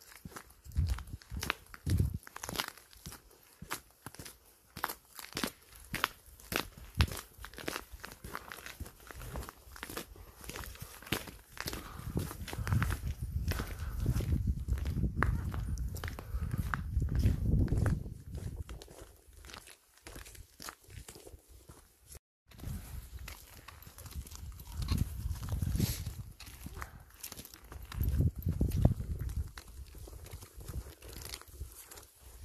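Footsteps crunching on a frosty gravel and stony hiking path, an irregular stream of steps. Low rumbling noise comes in for several seconds around the middle and again near the end.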